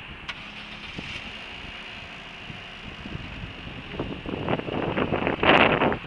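A car engine running, growing louder and rougher over the last two seconds.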